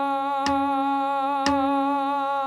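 A voice humming one steady held note as a warm-up exercise, over a beat track that clicks with a soft thump once a second, twice here.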